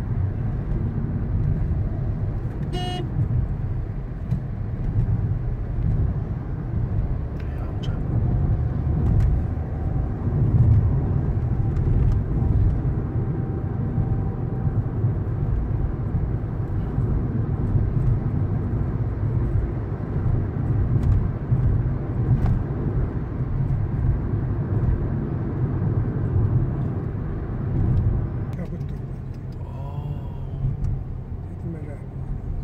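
Road and engine noise heard inside a moving car's cabin at highway speed: a steady low rumble that swells and eases a little, with a brief sharp sound about three seconds in.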